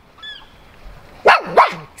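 A dog barks twice in quick succession about a second and a quarter in, after a couple of faint high whines.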